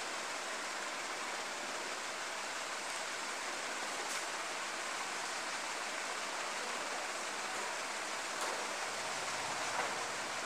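Steady, even hiss of background noise, with a few faint, brief sounds over it.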